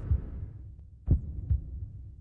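Heartbeat sound effect: low double thumps, a lub-dub pair about every second and a half, while a low hum fades out in the first half second.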